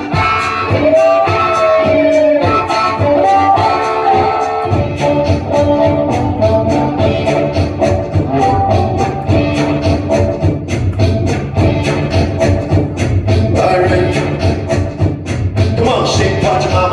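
Harmonica played live, with a long bent note about a second in; a steady beat with bass joins about five seconds in and carries on under the harmonica.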